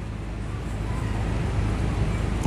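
Steady low background rumble, a dull hum with faint hiss above it, in a pause between spoken phrases.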